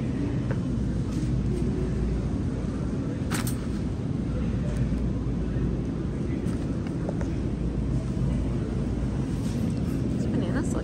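Steady low rumble of supermarket background noise, with a single sharp click about three and a half seconds in.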